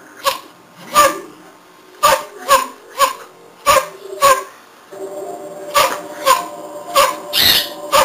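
Italian greyhound barking at a bearded dragon in its glass tank: about ten short, sharp, high-pitched barks at irregular intervals of half a second to a second, the last a little longer.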